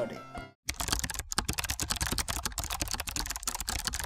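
Background music stops just after the start. After a brief gap comes a fast, continuous run of computer-keyboard typing clicks, a typing sound effect under an animated title card.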